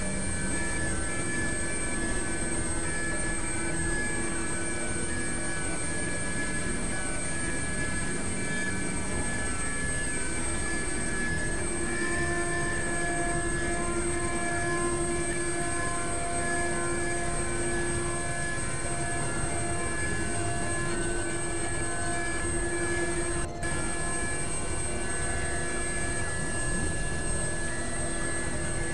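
Experimental synthesizer noise drone: a dense, steady wash of noise with several held tones sounding through it. A further tone joins about twelve seconds in, and the sound dips briefly about 23 seconds in.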